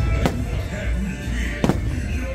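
Two firework shells bursting, the first just after the start and the second about a second and a half later, over the show's music soundtrack.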